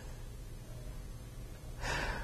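Quiet room tone with a faint low hum, then a man's audible intake of breath near the end, drawn before he resumes speaking.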